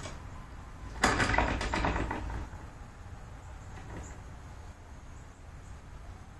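A ratchet strap on a tillering tree being worked to draw a heavy horn-and-sinew short bow further. About a second in there is a run of rapid clicks lasting about a second. Afterwards there is only a low steady hum.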